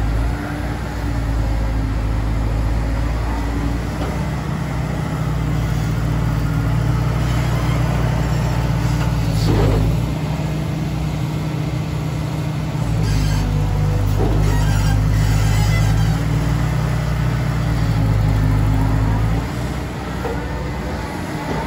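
Diesel engine of a Liebherr A924C Litronic wheeled material handler running steadily while the upperstructure slews and the boom moves. The engine note swells and eases twice as the hydraulics take load, with a couple of faint short clicks.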